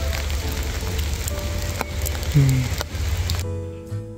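Rain falling on an umbrella, a steady hiss over a low rumble, under soft background music. About three and a half seconds in, the rain sound cuts off and acoustic guitar music plays alone.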